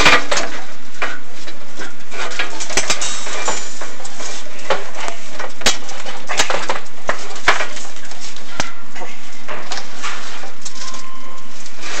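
Chimney inspection camera head and its push cable knocking and scraping against the flue liner as it is lowered down the flue, with irregular sharp clicks over a steady rustling hiss.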